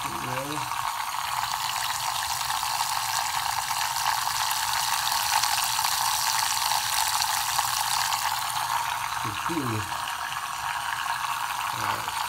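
Tornado motorised shaker cup running, its small motor base spinning a vortex in the water to mix in BCAA powder: a steady whirring hiss of motor and swirling liquid.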